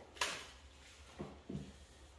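Paper sheets handled on a table: one short, sharp rustle about a quarter-second in, then two faint short sounds about a second later.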